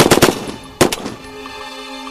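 A short rapid burst of machine-gun fire at the start, with one more shot a little under a second in. Then a low, sustained music chord takes over.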